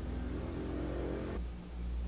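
A low, steady humming drone with a pitched tone over it; the pitched part cuts off abruptly about one and a half seconds in, leaving the low hum.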